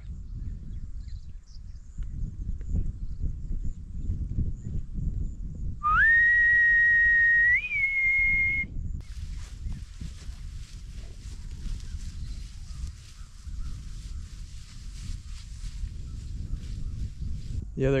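A person whistling one long call note to bring in a bison herd: it slides up at the start, holds steady, then steps up a little higher for its last second before cutting off, about six seconds in. A low rumble runs underneath, and a faint high rustling follows the whistle.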